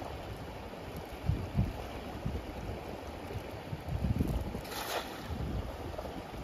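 Steady running water of a mountain river, with low buffeting of wind on the microphone and a brief burst of noise about five seconds in.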